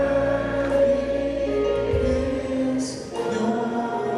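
Voices singing together in gospel church music, with accompaniment, holding long notes that change about two seconds in.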